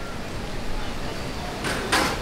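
Steady outdoor background noise with no clear single source, and a brief breathy whoosh near the end.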